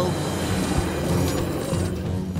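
Cartoon soundtrack: a loud, dense noisy sound effect that sounds mechanical, over low sustained music.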